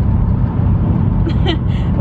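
Steady low rumble of road and engine noise inside a car's cabin while driving.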